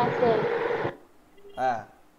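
A man's voice close to the microphone: a breathy, hissing utterance for about the first second, then a short spoken syllable near the end.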